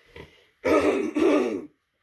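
A person coughing twice in quick succession, two loud rough bursts about half a second in.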